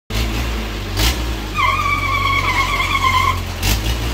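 A dragon swing carnival ride in motion: a steady low machinery hum with whooshing surges as the gondola swings past. About a second and a half in, a long high-pitched squeal is held for nearly two seconds.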